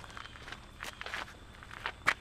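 Footsteps on a gravel and dirt driveway: a few separate steps.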